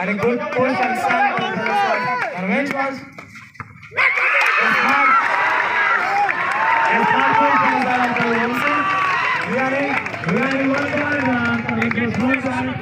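Volleyball crowd of spectators and players shouting and calling out. About four seconds in, after a brief lull, many voices burst out at once in loud cheering.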